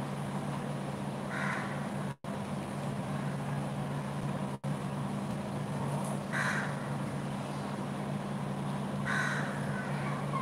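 A bird gives three short, harsh calls a few seconds apart over a steady low hum. The sound drops out twice very briefly.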